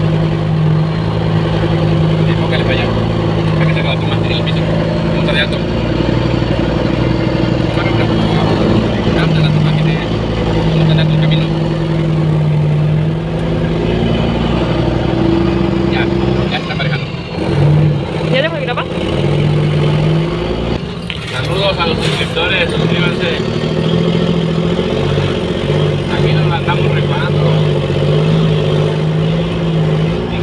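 Diesel engine of a heavily loaded semi-truck (about 55 tonnes) pulling steadily in first gear, heard inside the cab. Its note dips briefly twice past the middle, around 17 and 21 seconds, then settles back to the steady drone.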